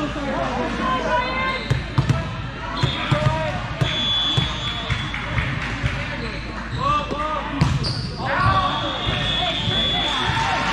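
Players' and spectators' voices calling across a large echoing gym during a volleyball match, with several sharp thuds of the volleyball being played, the loudest about two seconds in and near the three-quarter mark.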